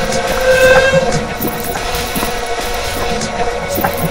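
Experimental sound collage of chopped, repeated and heavily processed recordings of voice, jingling keys and body percussion. A steady droning tone swells briefly about half a second in, over scattered short clicks.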